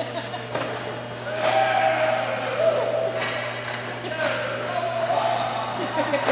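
Indistinct distant voices echoing around an indoor ice rink, with a drawn-out voice-like tone through the middle, over a steady low hum. A few sharp knocks stand out.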